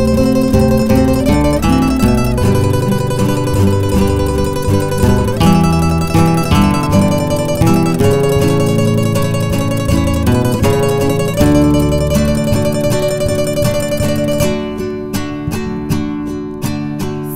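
A rondalla ensemble of acoustic guitars playing an instrumental passage, with plucked bass notes under a held melody line. About a second and a half before the end the playing thins to sparser single plucked notes.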